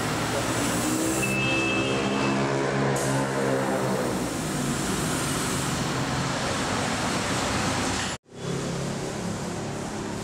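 Road traffic noise with a motor vehicle's engine passing close by, its pitch rising and then falling over the first few seconds. The sound cuts out abruptly for an instant about eight seconds in, then the traffic noise carries on.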